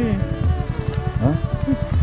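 Motorcycle engine idling with a steady, rapid low buzzing pulse.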